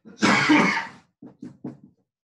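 A man coughing: one loud cough about a quarter second in, followed by three short, quieter coughs.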